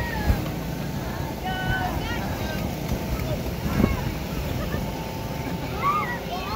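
Electric air blower of an inflatable bounce house running steadily, a constant rushing hum, with children's voices and calls over it and a couple of soft thumps.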